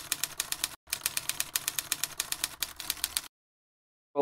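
Typewriter keystroke sound effect: rapid, even clicks at about seven a second, with a brief break just under a second in, stopping suddenly a little after three seconds.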